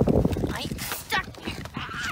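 Skis and poles scraping and crunching on packed snow in short, irregular strokes as a young skier shuffles along, with a low rush at the start and brief bits of voice.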